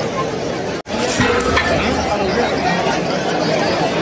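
A crowd of spectators chattering: overlapping voices with no clear words. The sound cuts out for an instant about a second in.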